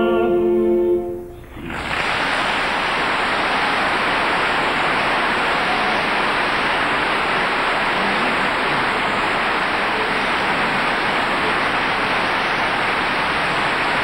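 A sung note with orchestra ends about a second in, then an audience applauds steadily for the rest of the time.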